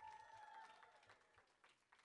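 Near silence in the hall: a faint steady ring from the podium's PA dies away about a second in, leaving only a few faint scattered clicks.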